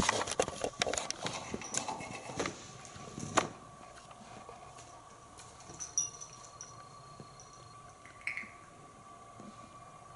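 A quick run of light clicks and knocks in the first few seconds, then a quiet room with a couple of faint, brief sounds.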